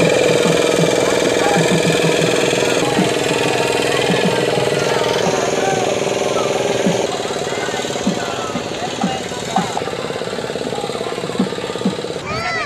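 Small long-tail boat motor running steadily at an even speed, its note shifting slightly a few times, with a crowd's voices around it.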